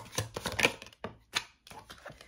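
A deck of tarot cards being shuffled by hand: a quick run of card taps and slaps in the first second, then one more about halfway through.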